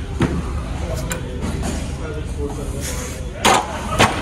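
Strained breathing of a lifter pressing barbell bench press reps, with a sharp, hissing exhale about three and a half seconds in, over a steady low hum.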